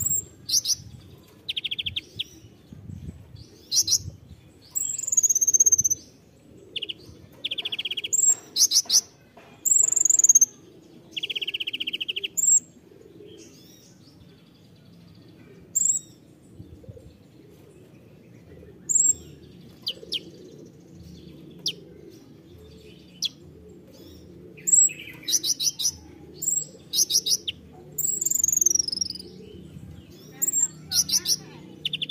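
Van Hasselt's sunbird (kolibri ninja) calling in short bursts of sharp, high chips and falling whistles. There are three short buzzy trills in the first half, sparse calls in the middle, and a quick run of calls near the end.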